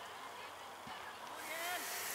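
Distant young players' voices calling across an outdoor football pitch, with a shout about one and a half seconds in. A faint high hiss rises at about the same moment.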